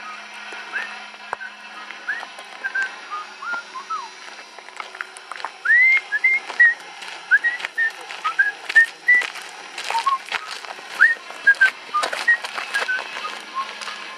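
A person whistling a tune in short, rising notes while walking, louder from about five seconds in, with footsteps on a gravel path.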